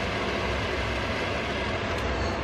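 Steady, even rushing noise with a low hum underneath, from the stove where a large pot of water is on the heat.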